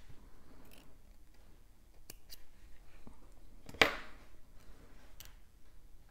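Small scissors snipping the beading thread once, a sharp click about four seconds in, with a few faint clicks of handling around it.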